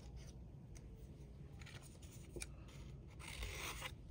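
Scissors cutting a short slit into the center of a paper rose petal: a brief, faint crisp cut near the end, with a few light clicks of paper handling before it.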